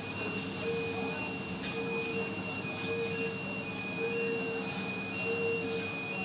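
An electronic warning beeper sounding a repeating two-tone pattern, a low beep about every second with a higher beep between, over the steady hum of factory machinery.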